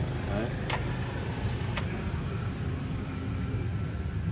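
A steady low machine hum, like a motor running, with two faint clicks about a second in and near the middle.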